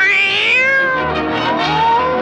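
A cartoon cat's meow that rises in pitch into a loud high yowl, over orchestral cartoon score.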